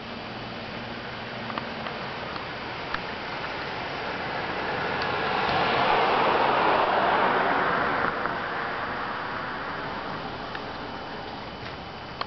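A car passing on the nearby street: its road noise swells to a peak about halfway through and fades away over the next few seconds.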